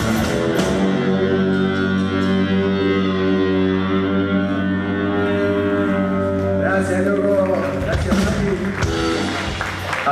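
Live rock band's distorted electric guitars and bass holding one final chord that rings out for several seconds after the drums stop. Near the end a man's voice comes in over the fading chord.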